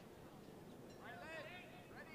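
Faint, distant voices calling out across an open playing field, with one short shout about a second in, over low background noise.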